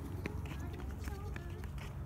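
A child's running footsteps on a concrete path, light quick steps about three a second.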